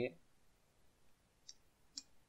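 Two faint computer mouse clicks, about half a second apart, near the end.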